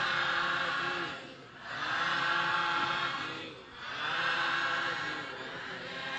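Buddhist congregation chanting together in unison, three drawn-out calls of about a second and a half each, many voices blended.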